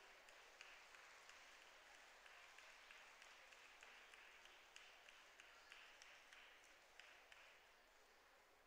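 Faint audience applause, many hands clapping in a scattered patter that thins out near the end.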